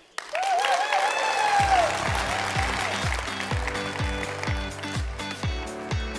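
Audience applauding, with music coming in: a steady deep kick-drum beat starts about a second and a half in.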